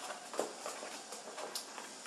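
A few light clicks and taps from a clear plastic buster collar being handled and turned over, the loudest about half a second in.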